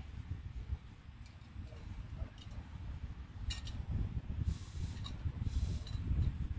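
Low wind rumble on the microphone, with a few light, sharp clicks as the cord, Figure 9 carabiner and stainless cup bail are handled while rigging the pot hanger.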